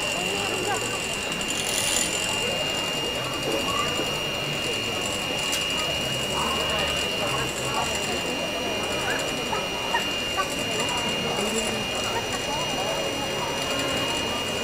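Electric beater running steadily, beating egg until it firms up, under a low murmur of crowd chatter.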